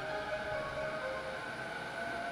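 JR E231-500 series electric train braking as it pulls into the platform, its inverter whining in two steady tones over the rumble of the wheels.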